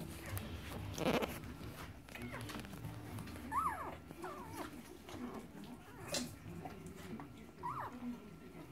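Newborn Entlebucher Mountain Dog puppies squeaking in a few short rising-and-falling whimpers, over soft rustling on the bedding, with a brief louder noise about a second in.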